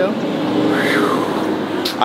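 A motor vehicle passing on the street, a steady engine hum over traffic noise, with a brief rise and fall in pitch about a second in.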